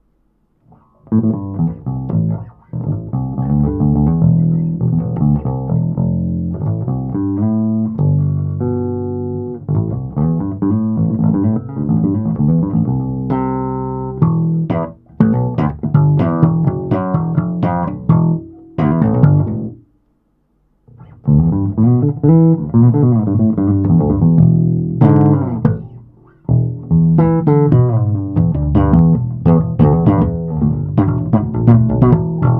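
Electric bass played through a Jaden JD 100B combo bass amp, 10-inch speaker with tweeter, 100 W, with its booster switched off. A busy run of low plucked notes starts about a second in and stops for about a second two-thirds of the way through before carrying on.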